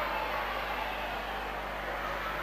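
Faint steady background hiss with a low hum underneath, and no distinct sound events.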